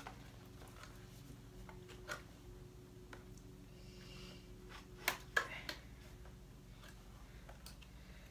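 Knife cutting open a small cardboard box: faint scratching and a few sharp clicks, one about two seconds in and a cluster around five seconds in, over a low steady hum.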